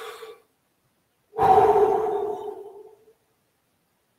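A man's deep breath close to the microphone: the end of an inhale just at the start, then a long audible exhale beginning about a second and a half in and fading out over nearly two seconds.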